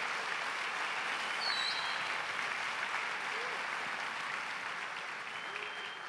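A large congregation applauding, a steady dense clapping that slowly fades toward the end.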